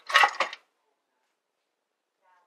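Ice cubes clattering in a plastic freezer ice bin: one short rattle in the first half-second, after which the sound cuts off to silence.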